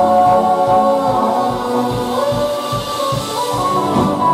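Live band playing violin, cello and drum kit, with women's voices singing in harmony over a steady drum beat.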